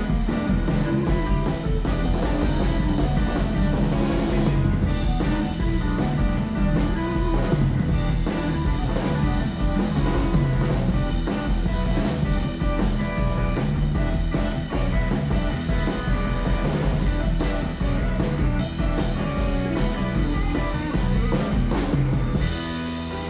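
Live rock band playing an instrumental passage with no singing: amplified electric guitars over bass guitar and a drum kit keeping a steady beat.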